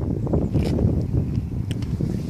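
Wind buffeting the camera's microphone: a loud, irregular low rumble, with a few faint clicks.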